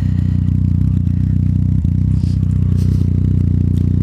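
Yamaha FZ-09's inline three-cylinder engine idling steadily through a Black Widow aftermarket full exhaust, with some scraping and rustling close to the microphone.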